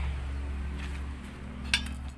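A single short metallic clink about three-quarters of the way through, as the removed steel wiper arms are handled and set aside, over a steady low background hum.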